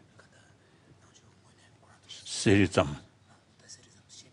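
Mostly a quiet room with faint rustling and whispering, broken about two seconds in by a man saying a single drawn-out "so".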